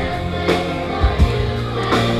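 Live orchestra and choir performing: sustained chords from the strings and voices over a bass line, with a few drum hits.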